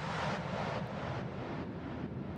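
Closing tail of a psytrance remix: a low rumbling noise effect with no beat. A hiss on top pulses about two to three times a second and fades away.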